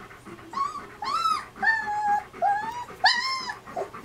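German Shepherd whining in a string of about five high whimpers, some rising and falling, one longer and level, each under a second.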